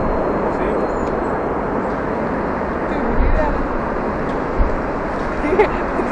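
Airbus A380-800 jet engines at landing power as the airliner flares low over the runway, a steady even jet rumble.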